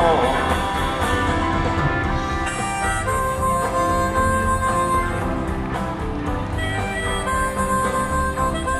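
Instrumental break in a folk-rock song: a harmonica plays long held notes over guitar and band accompaniment, coming in just as a sung line ends.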